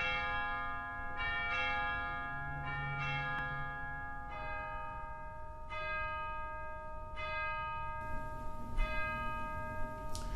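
Church bells ringing, a new stroke about every second and a half, each one ringing on into the next, with the notes stepping lower as they go.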